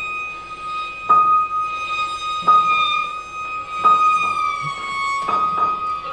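Violin holding one high, steady note in a contemporary chamber piece, freshly accented about every one and a half seconds, with the pitch sinking slightly about two thirds of the way through.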